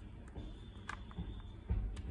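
Faint handling sounds of fingers pressing a tightly rolled paper quilling coil into a silicone dome mold on a table: a soft click about a second in and a low thump near the end.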